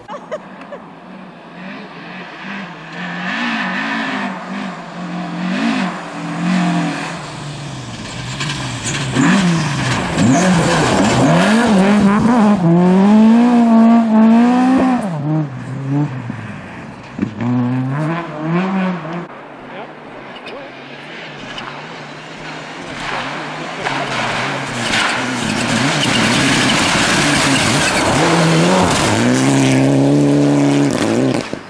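Rally car engines on a snow stage, revving up and dropping back through gear changes as a car drives through a bend, loudest in the middle. Near the end a second car's engine comes in loudly.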